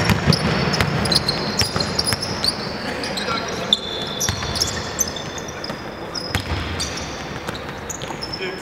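Basketball bouncing on a hardwood court amid players' running footsteps, with many short, high-pitched sneaker squeaks as they cut and stop.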